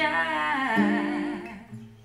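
A woman's voice holding a long sung note with vibrato, fading out about a second and a half in, while an acoustic guitar plays a few soft sustained notes beneath it.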